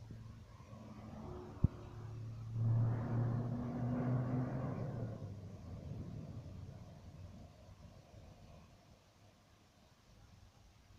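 Cars passing at a roundabout: a low engine hum builds as a vehicle drives by close, is loudest from about three to five seconds in, then fades away. A single sharp click comes about a second and a half in.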